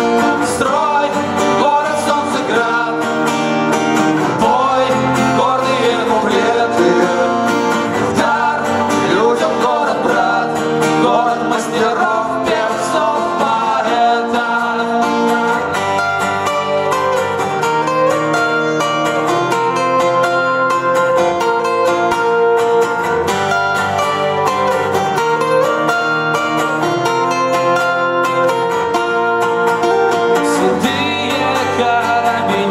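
Live acoustic song: acoustic guitars playing chords with a man singing over them.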